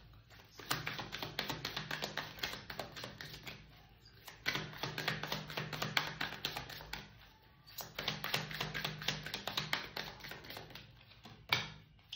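A deck of tarot cards being shuffled by hand: three runs of quick, crisp card clicks, each about three seconds long, with brief pauses between them.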